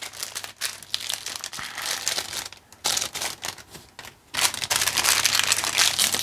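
Plastic wrapper of a Piggelin ice lolly crinkling as it is peeled open by hand, in fits with short pauses, loudest in the last two seconds.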